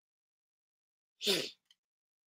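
A man sneezes once, a short sharp burst just over a second in.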